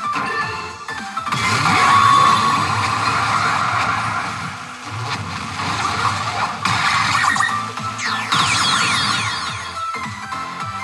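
Pachinko machine playing its presentation music and sound effects, swelling loudly about a second in and again near the end with sweeping falling effect tones.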